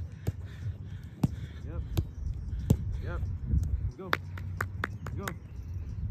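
A soccer ball being kicked and passed between players on artificial turf: sharp single strikes every second or so, then a quick run of close touches about four seconds in. A steady low wind rumble sits on the microphone.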